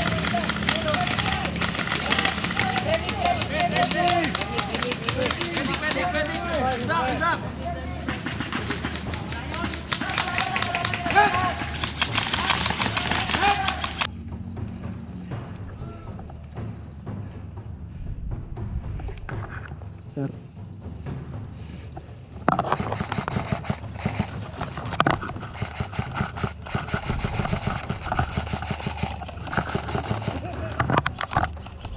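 Airsoft rifles firing in rapid bursts while players shout. About halfway through, the sound turns thinner and quieter. Sharp shots pick up again a few seconds later.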